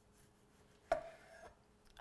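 Chef's knife slicing through a heirloom tomato, the blade knocking once on the wooden cutting board about a second in.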